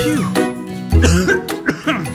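Children's song backing music with a cartoon man coughing over it, as if he is ill.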